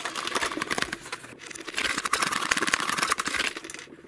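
The contents of a flashlight box being tipped out onto a wooden table: a dense run of rustling and small rattling clicks from bagged parts and paper sliding out, loudest past the middle.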